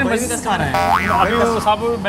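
A comedy sound effect, a tone that slides up and falls back down about a second in, laid over a man's voice.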